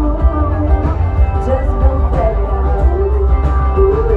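Live band music played through a concert PA and heard from the audience, with a heavy, booming bass end under guitar, drums and keyboards.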